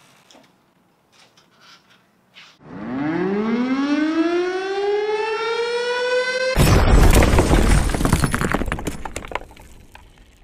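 Sound-effect sting: a siren winds up, rising in pitch and levelling off over about four seconds. It is cut off by a sudden loud crash that dies away over the next few seconds.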